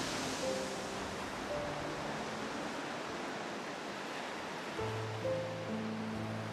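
Ocean surf crashing on a rocky shore: a steady wash of noise under soft background music of held notes, with a deeper sustained chord coming in near the end.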